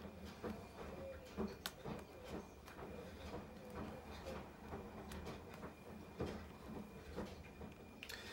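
Faint, irregular clicks and taps of a diamond painting pen pressing small resin drills onto the adhesive canvas, over a faint steady room hum.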